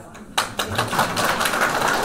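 Audience applauding, a dense run of hand claps that starts abruptly about a third of a second in and keeps going.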